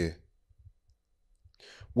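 A pause in conversation: a spoken word trails off at the start, then it is mostly quiet with a few faint low bumps. Near the end a breath leads into the next speaker's word.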